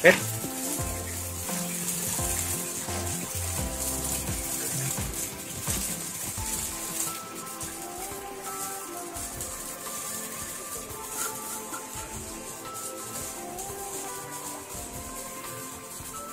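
Water falling from the three outlet pipes of a Sunsun CBF-350C koi-pond filter box and splashing into the pond, a steady hiss, with instrumental background music over it.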